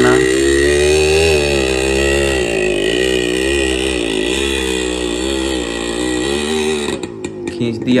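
Yamaha RX100's two-stroke single-cylinder engine revving under load as it tows a tractor by rope, its pitch rising and falling with the throttle. The engine sound drops away suddenly about seven seconds in.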